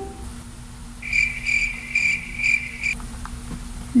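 Cricket chirping: a high trill pulsing a few times a second, starting about a second in and cutting off suddenly after about two seconds. A faint low hum runs beneath it.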